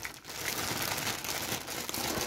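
Thin clear plastic packing bag crinkling continuously as hands handle and spread it open.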